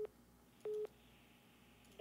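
Short electronic beeps at one steady mid pitch, about two-thirds of a second apart: one is just ending at the start, and a second comes about two-thirds of a second in.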